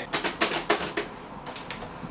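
Typing on a laptop keyboard: a quick run of key clicks that thins out after about a second.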